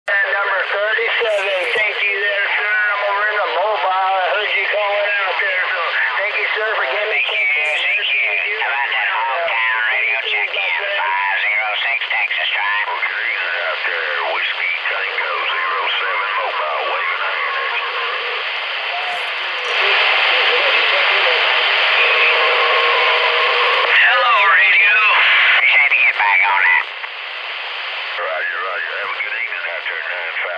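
Voices of other stations coming in over a CB radio tuned to channel 36 (27.365 MHz), thin and narrow-sounding over a constant bed of static hiss. About twenty seconds in a stronger, louder signal comes up with a steady tone under the voice, then drops off suddenly about seven seconds later, leaving weaker voices in the static.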